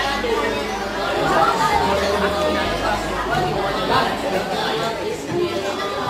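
People talking over one another: continuous chatter of several voices.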